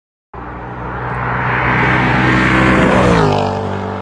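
A car engine passing by at speed. It starts suddenly about a third of a second in and grows louder over a couple of seconds, then its pitch drops as it goes past and fades toward the end.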